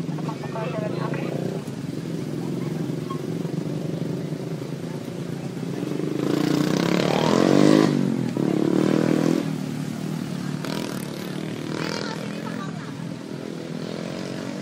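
A motorcycle engine passing close on the street, rising in pitch to its loudest about eight seconds in and then falling away, over a steady low drone of traffic.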